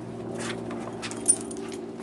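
Dogs moving about close by, with a short sniff-like rustle and a sharp metallic clink, like a collar tag, a little over a second in, over a faint steady hum.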